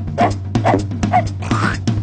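A cartoon dachshund barking repeatedly, about two barks a second, over background music with a steady low hum.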